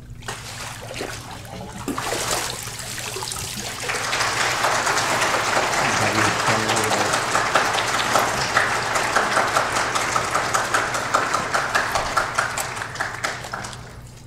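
Water splashing in a church baptistry as a person is immersed, then a congregation applauding for about ten seconds, the clapping fading near the end.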